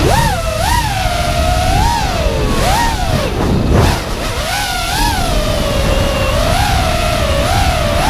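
FPV quadcopter's Scorpion 2204/2300 brushless motors spinning three-blade DAL T5040 V2 props: a loud whine that rises and falls continually with the throttle, over wind rumble on the onboard microphone.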